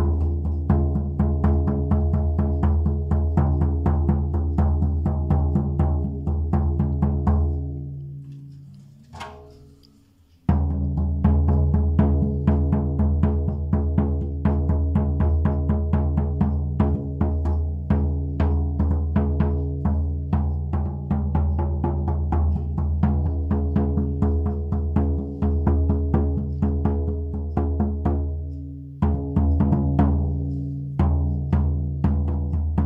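Large shamanic frame drum struck rapidly with a soft-headed beater: a fast, even beat over a deep ringing tone with overtones. About seven seconds in the beating stops and the drum rings out to near quiet, then the beating starts again; it briefly rings down once more near the end.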